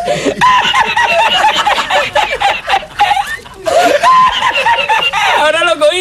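A man laughing hard in quick, repeated high-pitched bursts, with a brief break about halfway through.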